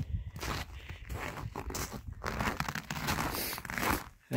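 Snow crunching in irregular steps and rustles, as of boots moving over a snow-covered roof.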